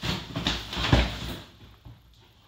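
A dog scrambling into a soft fabric suitcase and the lid flopping shut over it: a few dull thumps and rustles, the loudest about a second in.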